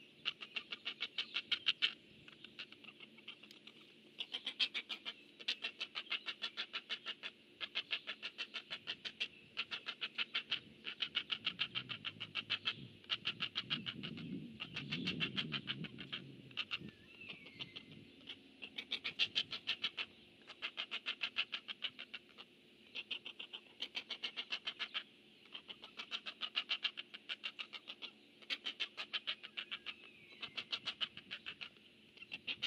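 Great blue heron nestlings giving their begging call, a rapid clicking chatter in bursts of a second or so, repeated over and over as a parent comes to the nest to feed them. A lower sound swells briefly midway.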